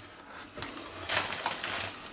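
Thin plastic bag rustling and crinkling as a hand rummages inside it, starting about half a second in.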